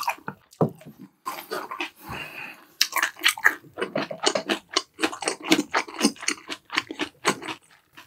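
Close-miked chewing of a mouthful of food: wet mouth clicks and crunches, about four or five a second, from about three seconds in until shortly before the end.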